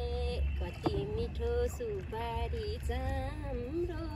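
A high voice singing a slow melody in short held notes, over a low steady rumble.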